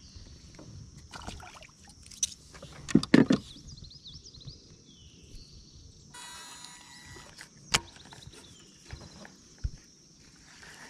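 Fishing gear handled on a plastic kayak: a cluster of knocks about three seconds in as the fish-grip pliers are set down in the hull, then a sharp click and a low thump near the end, over a steady high hum.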